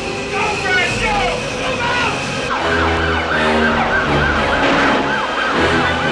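Ambulance siren wailing in a fast rise-and-fall, about three sweeps a second, starting about halfway through, over film soundtrack music.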